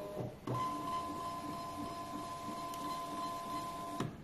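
Hoin thermal label printer feeding and printing a run of barcode labels: after a short start-up noise, its motor gives a steady, even whine from about half a second in.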